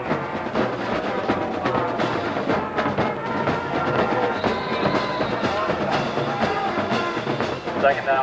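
A band playing horns and drums, with held brass-like notes over a steady drum beat, loud enough to compete with the play calls on the field.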